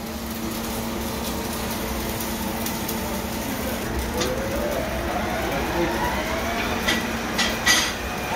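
Workshop machinery noise in a welding and machine shop: a steady hum, a motor winding up in pitch from about four seconds in, and a few sharp knocks near the end.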